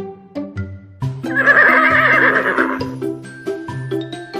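A horse whinnying loudly for about two seconds, starting about a second in, over background music of plucked notes.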